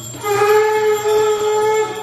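Conch shell blown in one long, steady horn-like note, with a slight upward slide as it starts about a quarter second in, stopping just before the end.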